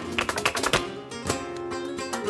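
Flamenco guitars playing alegrías, with a quick run of sharp palmas (handclaps) through the first second, after which the guitar notes ring on with only a few claps.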